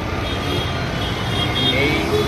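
Steady low rumble of motor vehicle engines and road traffic, with a voice starting near the end.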